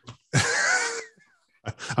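A breathy, wheezing laugh lasting under a second, starting about a third of a second in, with a faint gliding pitch in it; a voice starts up near the end.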